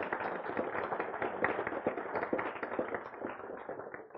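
Audience applauding: many hands clapping in a dense, crackling patter that eases slightly near the end.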